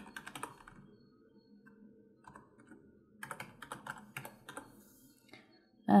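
Typing on a computer keyboard: a quick run of keystrokes at the start, a few scattered taps, then another run about three seconds in.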